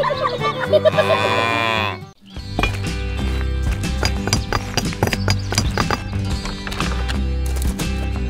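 Background music. For the first two seconds a warbling, pitch-bending voice-like sound runs over the music. About two seconds in it cuts off in a brief drop to near silence, and a different track with a steady beat and heavy bass takes over.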